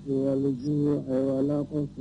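A male voice chanting Islamic religious phrases in Arabic, in held, melodic phrases broken by short pauses.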